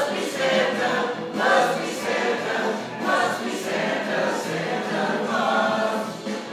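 A group of voices singing a Christmas carol together, unaccompanied.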